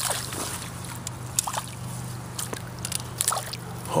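Light sloshing and small splashes of shallow pond water as a landing net is dipped to scoop a hooked bluegill, with scattered small ticks.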